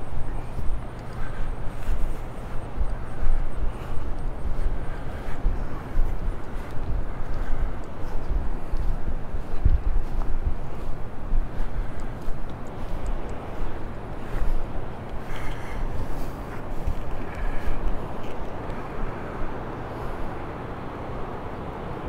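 Wind buffeting the camera microphone in uneven gusts over a low, steady rumble.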